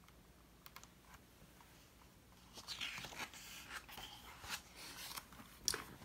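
Page of a hardcover picture book being turned by hand: a few soft clicks, then about three seconds of faint paper rustling and handling, ending with a sharper tap as the page settles.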